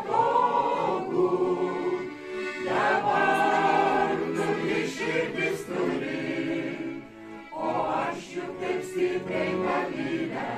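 Mixed folk choir of men's and women's voices singing a Lithuanian folk song to piano accordion accompaniment, with brief breaks between sung phrases about two and a half and seven seconds in.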